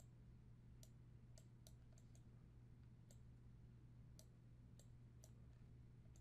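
Faint computer mouse clicks, about ten sharp irregularly spaced clicks, over a steady low hum.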